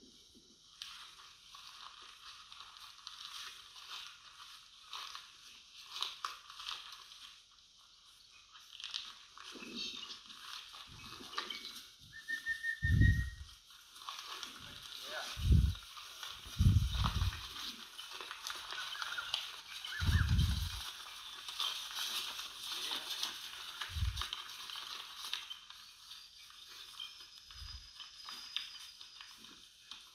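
Faint open-paddock ambience: a steady high hiss with a few scattered bird chirps, broken by about six short, low thumps in the second half.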